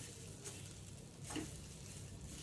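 Faint sizzle and scrape of grated coconut roasting in a pan as it is stirred with a spoon, a couple of small scrapes standing out; the coconut is still drying out and has not yet browned.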